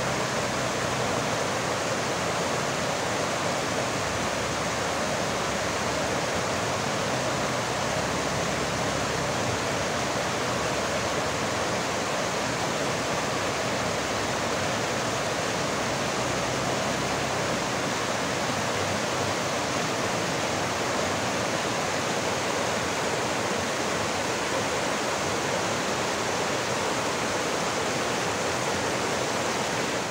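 Fast mountain stream rushing over boulders and small cascades: a steady, unbroken rush of water.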